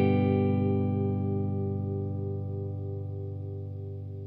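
A single chord on a humbucker-equipped electric guitar, played through an Origin Effects Revival Drive Compact overdrive into a Fender Deluxe Reverb amp, held and left ringing with an overdriven crunch and slowly fading. One note throbs steadily as the notes beat against each other.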